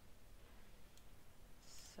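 Near silence with a single computer mouse click about halfway through.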